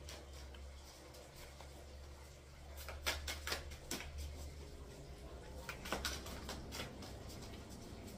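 Oracle cards being shuffled by hand: scattered soft clicks and taps of card edges, over a low steady hum.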